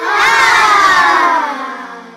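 A comedic sound effect of several voices letting out one long shout that slides down in pitch and fades away near the end.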